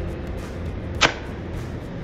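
A golf iron strikes once: a single sharp crack about a second in.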